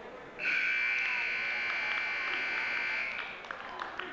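Gym scoreboard buzzer sounding one steady tone for about three seconds, starting about half a second in, marking the end of a wrestling period. A few sharp knocks follow near the end.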